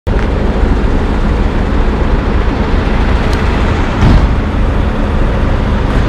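Steady low rumble of an idling motor vehicle engine, with a brief swell about four seconds in.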